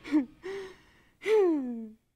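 A man's wordless vocal sounds: two short notes, then a longer note that falls in pitch.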